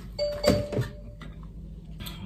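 Cardboard frozen-pizza box being moved and set down, with two light knocks, while a short steady beep-like tone sounds for about a second.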